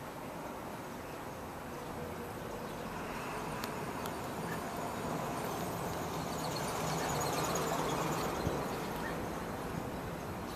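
Outdoor background noise: a steady low rumble of distant traffic that swells and eases again in the second half, with faint high chirps over it.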